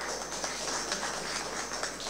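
Small audience applauding with a run of hand claps.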